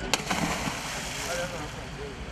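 A scuba diver in full gear hitting the water feet-first: one sharp, loud splash just after the start, followed by about a second of water churning and settling.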